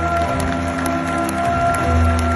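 Live rock concert music picked up by a phone from far back in an open-air venue: sustained chords held over a heavy bass.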